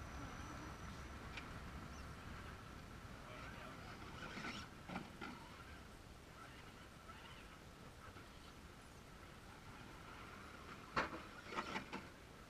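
Faint, steady whine of radio-controlled rock crawlers' electric motors and geartrains as they creep up rock, with a few short clicks and scrapes about four to five seconds in and a louder cluster near the end.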